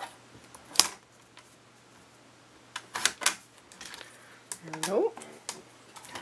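Paper cutter trimming a strip of paper: a sharp click a little under a second in, then a cluster of clicks around three seconds in.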